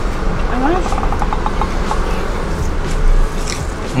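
A brief murmured voice sound, a rising "mm" followed by a short run of quick pulses, from someone tasting food, about half a second to a second and a half in. Under it, a steady low rumble of a car cabin.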